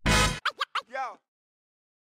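Tail of a music intro sting: a loud hit, then three quick record-scratch-like pitch swoops and one longer arching swoop, cutting off just over a second in.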